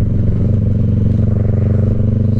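Sport motorcycle engine running steadily at cruising speed through a loud aftermarket exhaust.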